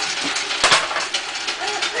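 A sharp knock about two-thirds of a second in, followed by light clattering of small objects, as plastic toys and props are handled on the floor.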